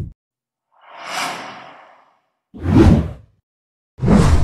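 Intro-animation sound effects: a swelling, airy whoosh about a second in, then a shorter, heavier whoosh with a deep low end a little before the end.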